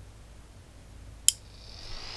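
A single sharp click from a relay on a 4-channel Wi-Fi relay module switching on about a second in, followed by the small DC cooling fan it powers starting up with a faint, slightly rising whine.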